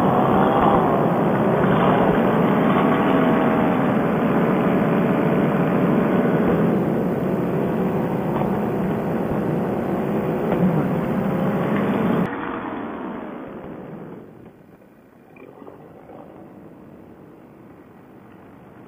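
Paramotor engine and propeller running steadily under power, with a slightly wavering pitch. About twelve seconds in the sound drops sharply and fades away to a faint hum, as the throttle comes off for the landing approach.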